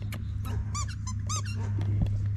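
Two short, high squeaks about half a second apart from a plush dog toy being chewed by a beagle puppy, with small clicks of mouthing and a steady low hum underneath.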